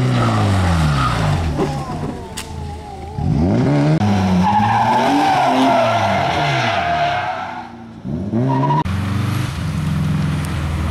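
Rally car engines revving hard, the revs dropping and climbing again through gear changes as the cars take bends close by. In the middle, a long wavering tyre squeal lasts about three seconds, and the engine sound changes abruptly as it cuts from one car to another.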